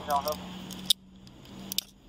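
Metal handcuffs being put on: a sharp metallic click about a second in and a few lighter clicks and jingles near the end as the cuffs are closed on the wrists.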